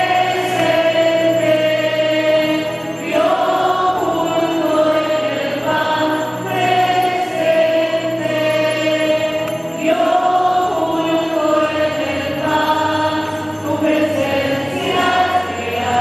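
A choir singing a slow devotional hymn over a sustained low accompaniment, in long held notes that change every few seconds.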